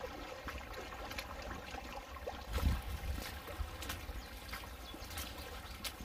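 Shallow stream water running over a cobbled ford: a steady trickling, with faint footstep clicks on wooden footbridge boards.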